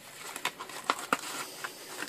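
Hands handling packaging: paper and plastic wrapping crinkling and rustling, with scattered small ticks.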